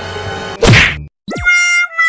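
Edited-in comedy sound effects. A dense held sound gives way to a loud falling whoosh about two-thirds of a second in, then a brief gap, a quick pitch glide and a steady held electronic-sounding tone.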